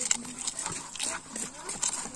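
Scattered knocks and slaps as a large fish is held down and handled in an aluminium basin.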